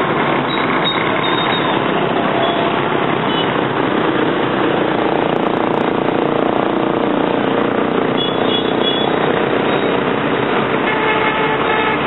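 Steady noise of heavy motorbike traffic on a wide city road, with a few short high beeps partway through.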